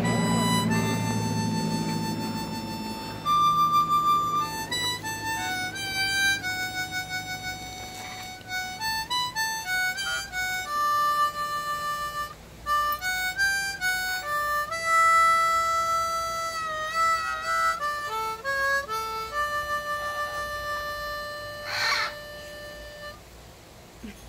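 Harmonica playing a melody of single held notes that step up and down, some long, some quick and repeated. A brief harsh burst cuts in near the end, just before the playing fades out.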